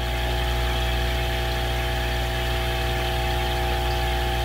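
Steady electrical hum of running aquarium equipment, a low drone with a few fixed higher tones and no change in level.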